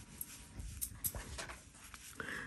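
Faint, soft strokes of a clean, damp Chinese brush on paper as it fades an ink wash, a few light irregular ticks over quiet room tone.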